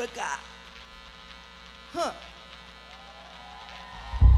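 Steady low electrical hum from the PA sound system, with a man's voice briefly over it at the start and again about halfway through.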